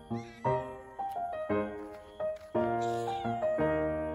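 A cat meowing twice over gentle piano background music, once near the start and again about three seconds in.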